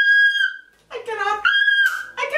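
A young woman squealing with excitement: a long high-pitched squeal that breaks off about half a second in, a short exclamation, then a second high squeal near the end.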